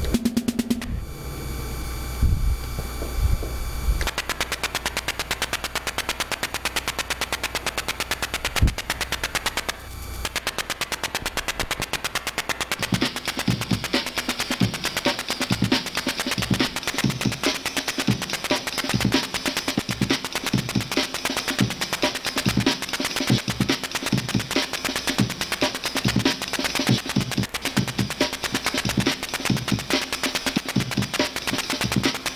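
Drum loop played from an ISD1760 chip sample player together with a synthesizer's rhythm, the two being brought into the same tempo. A fast, even ticking pulse runs throughout; a low bass stops about four seconds in, and a fuller, brighter beat joins around thirteen seconds in.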